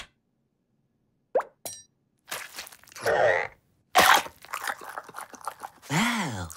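Cartoon sound effects: after about a second of silence, two short popping blips, then a scratchy burst of noise and a busy run of quick clicks and rustles.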